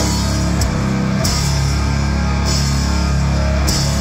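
Death metal band playing live: heavily distorted electric guitar and bass riffing over a drum kit, loud and unbroken, with cymbal crashes washing in several times.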